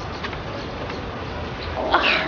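A dog gives a couple of brief, faint yips shortly after the start, over steady outdoor background noise.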